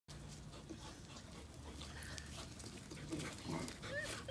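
A dog vocalising excitedly: a few low grunts from about three seconds in, then a short rising whine-like yelp at the very end.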